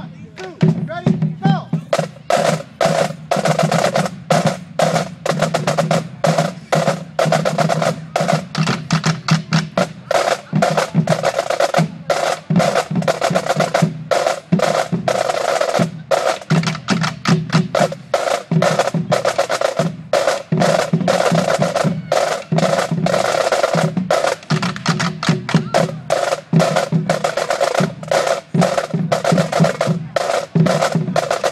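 A drumline of marching snare drums and bass drums playing a fast, dense cadence with rolls, starting about half a second in.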